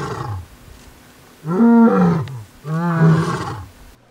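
Male lion roaring: three long, low calls of about a second each. The first trails off just after the start, and the other two follow close together from about a second and a half in.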